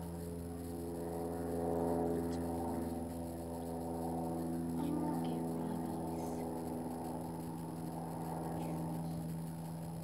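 A motor or engine running steadily: a low, even hum made of several steady tones.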